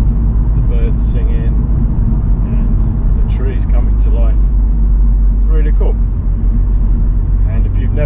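BMW Z4 E85 roadster driving slowly with the roof down: a steady deep rumble of wind, tyre and road noise over the engine's even hum.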